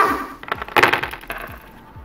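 A short burst of rapid sharp clicks and clatter about half a second in, dying away within a second.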